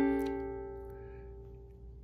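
A ukulele chord, the alternative A7 fingering, strummed once just before and ringing out, fading steadily until it has almost died away near the end.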